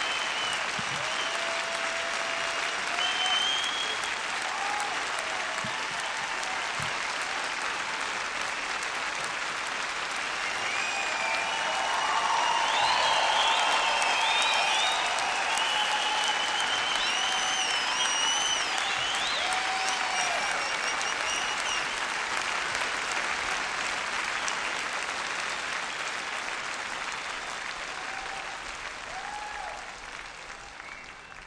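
Concert audience applauding, with cheers rising over the clapping. It swells about twelve seconds in and dies down toward the end.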